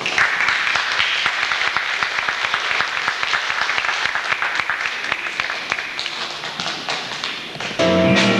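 Audience applauding, a dense patter of many hands clapping that slowly dies down toward the end.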